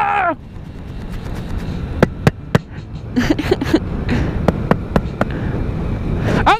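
Wind and road noise from a moving 125cc scooter rumbling steadily on the camera's microphone, broken by sharp knocks: three about two seconds in and four more near the end.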